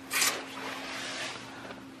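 A brief rustle just after the start, then a faint steady hiss over a low, steady room hum.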